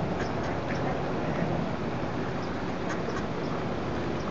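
Mallard hen giving a few short quacking calls to her ducklings, over a steady background noise.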